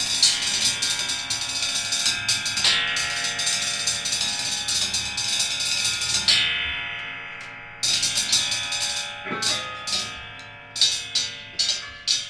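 Free improvised instrumental music: sharp struck sounds that ring on over a dense cluster of sustained tones. About six seconds in, one strike rings and dies away before the cluster comes back, and near the end a run of separate sharp strikes comes about twice a second.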